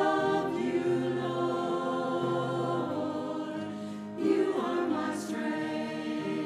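Choir singing sacred music, with sustained chords and a new phrase starting about four seconds in.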